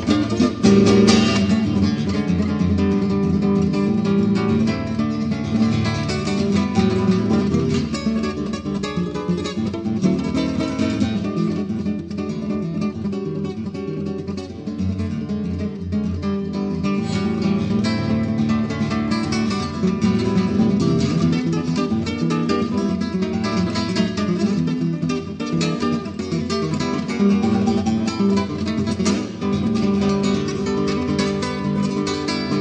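Solo nylon-string acoustic guitar (violão) played fingerstyle in a live club recording: a continuous run of plucked melody notes and chords over a bass line.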